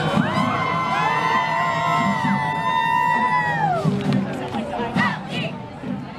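Marching band playing in a street parade, its horns holding long notes that slide down together about three and a half seconds in, over a cheering crowd.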